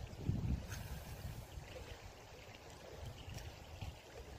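Wind buffeting the microphone in gusts, a low uneven rumble, with a couple of faint clicks.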